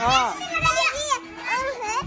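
Young children's high-pitched voices calling out and babbling as they play, in short bursts with brief gaps.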